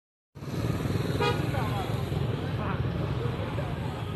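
Busy street traffic close by: vehicle engines running at low speed among a crowd, with one short vehicle horn toot about a second in. The sound cuts in after a brief silent gap at the start.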